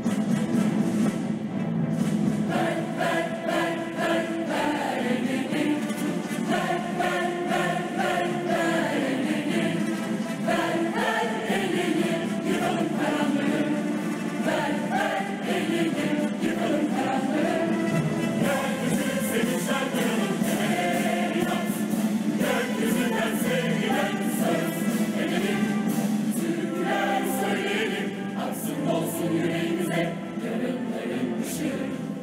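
A large mixed choir singing a march with a symphony orchestra, strings prominent, at a steady full level.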